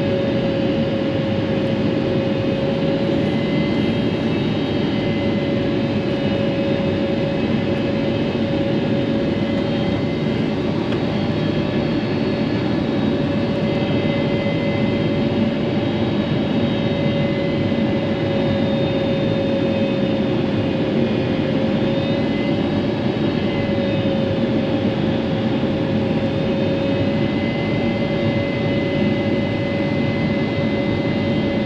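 Cabin noise inside a Boeing 777-300ER descending to land: the steady roar of its GE90 engines and the airflow, with a droning tone that drifts slightly in pitch as the thrust changes.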